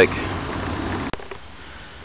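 Steady rush and hum of water flowing through a hydroelectric plant's steel penstock and the plant's S. Morgan Smith horizontal turbines running. It cuts off with a click about halfway through, leaving a much quieter background.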